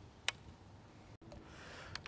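A single short, sharp click from a baitcasting reel as the rod is pitched, then faint hiss near the end.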